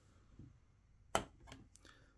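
Handling of a small white plastic action-figure display stand with a figure pegged onto it: one sharp plastic click a little over a second in, then a few faint ticks as it is picked up off the table.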